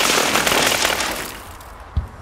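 Rocket fired from a military helicopter gunship: a sudden loud rushing blast that fades over about a second and a half, with a short sharp crack near the end.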